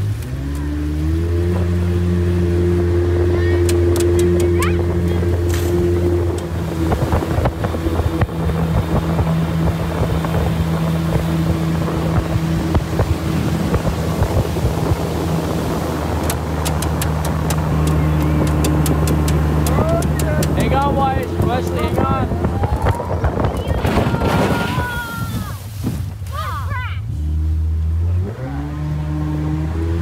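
A 125-horsepower outboard jet motor driving a riveted aluminium flat-bottom boat up a shallow river: it revs up right at the start and then runs steadily under throttle. Near the end it eases off briefly and then picks up again.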